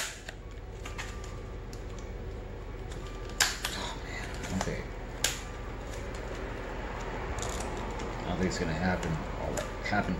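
Brittle, sun-aged plastic blister packaging being pried open by hand, giving a few sharp cracks and snaps, the loudest about three and a half and five seconds in, with quieter handling between them over a steady low hum.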